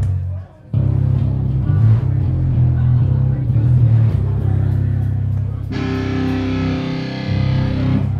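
Distorted electric guitar through an amplifier, with a steady low hum under it. It drops out briefly just after the start, then plays on, and from about six seconds in a chord is held and rings.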